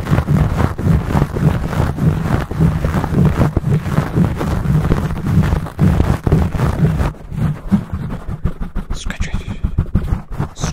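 Fingertips and nails scratching and rubbing fast and hard on a foam microphone windscreen right at the capsule: a dense, loud run of scrapes with a heavy low rumble. About seven seconds in the rumble drops away and the strokes become quicker, separate scratches.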